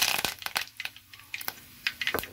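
Curry leaves and mustard seeds spluttering in hot oil in a clay pot: a loud sizzle as the leaves hit the oil right at the start dies down within a fraction of a second into scattered sharp pops and crackles.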